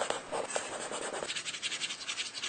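A drawing pen scratching in rapid, continuous strokes, as in a hand-drawn animation. About a second and a half in, the fuller lower part of the scratching falls away, leaving a thinner, higher scratch.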